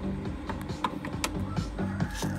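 A song playing through the QT Acoustic RX602 column speakers and a subwoofer, with a steady, repeating bass line. A few light clicks sound over it.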